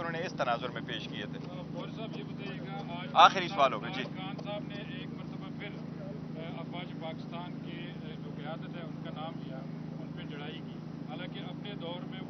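Faint speech away from the microphones, with one brief louder voice about three seconds in, over a steady low hum.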